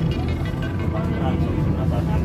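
Steady low rumble of a city bus's engine and tyres heard from inside the passenger cabin as it drives, with background music over it.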